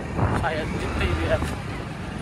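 Quiet, faint voices over a steady low outdoor rumble.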